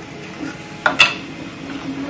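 Two sharp clicks of hard plastic close together about a second in, as a small printed card case and card pack are handled. Under them, the faint steady hum of an Elegoo Neptune 4 Plus 3D printer running a print.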